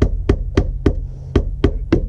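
A fist pounding a sheet of rigid foam insulation board pressed against the underside of a cargo trailer: about seven dull knocks at roughly three a second, with a short pause midway. The blows press the shape of the frame into the foam to mark where it must be cut. A steady low hum runs underneath.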